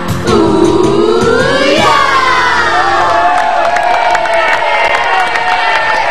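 The last line of a pop theme song sung by a group into microphones, ending on a long held note, over a cheering, clapping studio audience.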